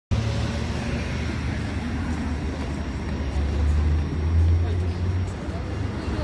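Low rumble of street traffic, swelling to its loudest as a vehicle passes about three and a half seconds in, under faint indistinct voices.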